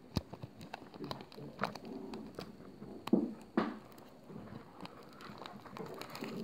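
Foil booster-pack wrapper crinkling faintly as fingers pick at its crimped top seal, with a few sharper crackles.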